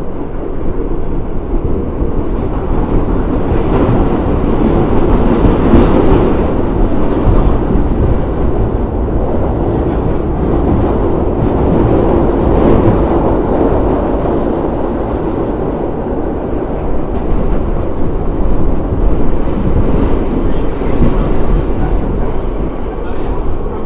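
R62A subway car running along the track, heard from inside the car: a loud, steady rumble and rattle of wheels and car body that swells and eases a few times.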